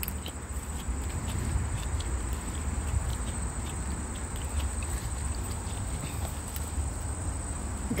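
Crickets singing as a steady high-pitched drone, over a low rumble on the phone's microphone, with a few faint ticks and rustles.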